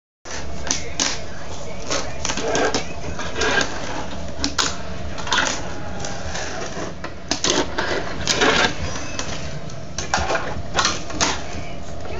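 Fingerboard (miniature finger-operated skateboard) rolling and clacking on a wooden floor and small ramps: a run of irregular clicks and taps as the board's wheels and deck hit the surfaces.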